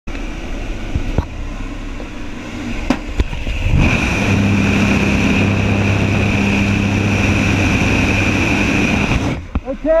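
Skydiving jump plane's propeller engines running with rushing air at the open door, and a few sharp clicks in the first three seconds. From about four seconds in it turns louder, with a steady engine hum and wind on the microphone in the slipstream. It drops away suddenly near the end, when a voice says "okay".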